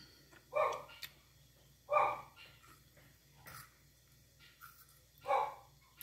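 A dog barking in short single barks spaced a second or more apart: three clear barks and a fainter one between the second and third.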